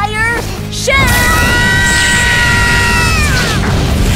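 Cartoon sound effects of two magic energy beams clashing: a loud rumbling blast starts about a second in, with a long steady high whine on top that bends downward near the end, over dramatic music.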